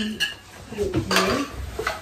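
A serving spoon scraping and clinking against a frying pan and plates as scrambled egg is dished out: a few sharp clinks about a second apart.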